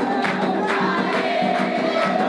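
Candomblé ritual music: a group sings a chant together over a steady beat of atabaque drums, about four strokes a second, with a note held long through the second half.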